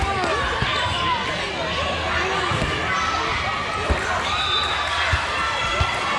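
Overlapping chatter of many players and spectators in a volleyball hall, with about five irregular low thuds of volleyballs bouncing on the court floor.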